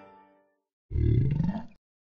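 Piano music fading out, then about a second in a deep growl, rising in pitch and lasting just under a second before cutting off suddenly.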